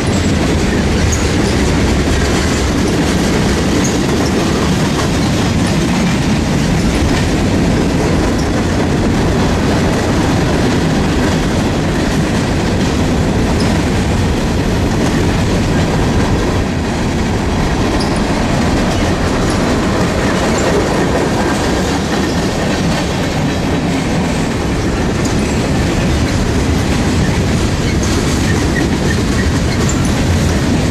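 Freight train cars of hoppers, boxcars and tank cars rolling past close by: a steady, loud rumble of steel wheels on the rails, with clickety-clack over the rail joints.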